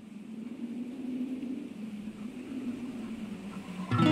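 A low, steady rumbling noise without a clear pitch or rhythm opens the track. It swells a little in the first second.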